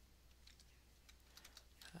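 Faint computer keyboard keystrokes: a few separate key presses, most of them in the second half.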